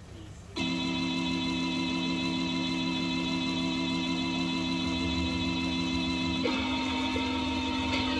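Music playing back from an Akai GX-635D reel-to-reel tape deck, starting abruptly about half a second in: held chords that change shortly before the end.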